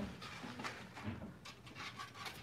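Faint rustling and a few soft taps of packaging being handled: a white protective sheet is slid off a wood-framed print.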